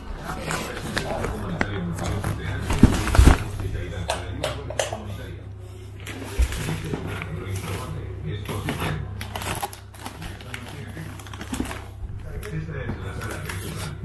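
Gifts in shiny wrapping paper being handled and set down: irregular crinkling and rustling of the paper, with a heavier thump about three seconds in.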